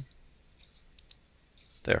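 A few faint computer mouse button clicks, two of them close together about a second in.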